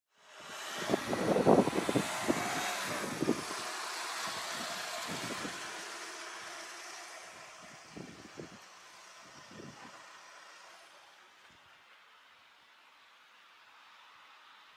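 A car running, its noise fading gradually over about ten seconds, with a few low thumps early on and again around eight to ten seconds in.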